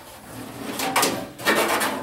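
Sheet-metal furnace blower housing scraping and knocking as it is slid and turned around on top of the metal cabinet.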